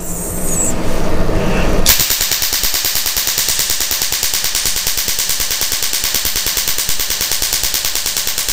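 Laser handpiece firing rapid pulses onto a carbon peel mask: a loud, fast, even train of sharp snapping pops, starting about two seconds in. The pops come from the carbon being blasted off the skin with a small spark at each pulse, the 'lluvia de estrellas' of a carbon laser peel.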